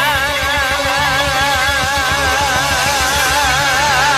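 A male singer holding one long high sung note with a wide, even vibrato, over the band's low accompaniment.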